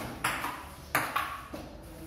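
Table tennis ball clicking off paddles and the table during a rally: three sharp hits, one shortly in, then two in quick succession about a second in.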